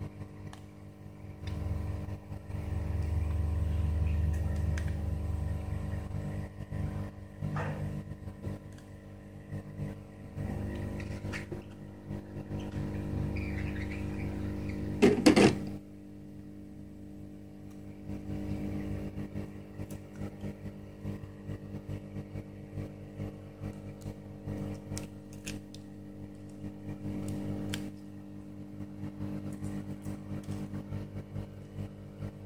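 A thin plastic strip scraping leftover touch glass and adhesive off a smartphone's metal display frame: scattered small scratches and clicks, with one sharp, louder scrape about fifteen seconds in. Under it runs a steady low hum that swells twice.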